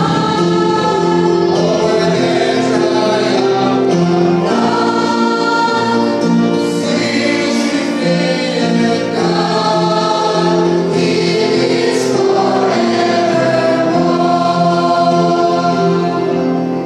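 Mixed choir of men's and women's voices singing a gospel hymn together, holding long sustained notes that move from chord to chord.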